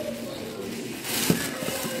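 Crinkly rustling with a few light clicks, starting about a second in: artificial flowers and craft materials being handled and picked up on the table.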